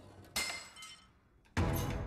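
Commercial sound effects: a sudden glassy clink with ringing tones that fade within about half a second, then a loud crash about a second and a half in that leads into music.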